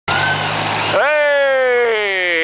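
A 1940s Ford tractor's four-cylinder engine running at idle. About a second in, a person's voice starts one long drawn-out call that slowly falls in pitch over the engine.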